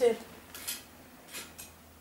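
Two brief, soft rustles of a smooth-grain sheep or goat leather hide being handled, about half a second in and again near the middle.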